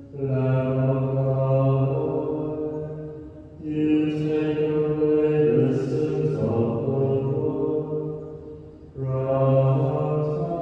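Slow sung church chant in long held phrases, with brief breaks about three and a half seconds in and again near the end.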